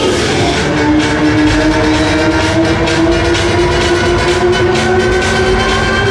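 Loud fairground music with a steady beat, over which a long held tone rises slowly in pitch.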